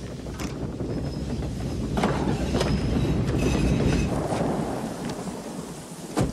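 Heavy rain pouring down, with a long low rumble of thunder that swells about two seconds in and fades toward the end.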